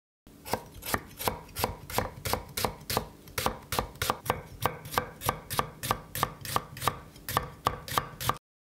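Kitchen knife thinly slicing white and red onions on a wooden cutting board: a steady rhythm of sharp knocks of the blade on the board, about three cuts a second.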